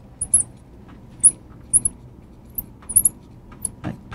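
A marker squeaking on a glass lightboard while a line of handwriting is written: a series of short, high squeaks, one with each pen stroke.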